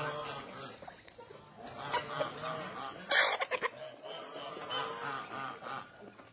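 A flock of chickens clucking and calling while they feed. A short burst of noise a little after three seconds in is the loudest moment.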